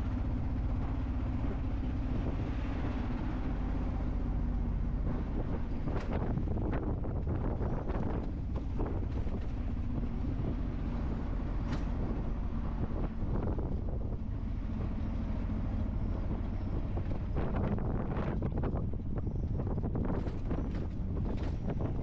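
Tuk tuk's small engine running steadily while driving along a city street, heard from inside its open cab with wind on the microphone and occasional short knocks and rattles.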